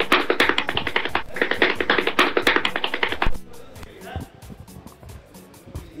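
Music with a fast, even beat mixed with shouting voices, dropping abruptly to a faint level a little over three seconds in.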